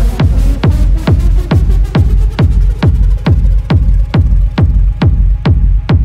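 Acid techno playing loud, driven by a steady four-on-the-floor kick drum at a little over two beats a second. The high end thins out near the end.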